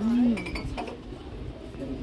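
Light clinking of a lidded ceramic pumpkin-shaped casserole dish as it is taken hold of and handled on a shelf. A short hummed voice sounds at the very start.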